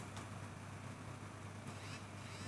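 Faint steady low electrical hum under a light hiss, the background of an open studio or phone line with nobody speaking; a faint high wavering sound comes in near the end.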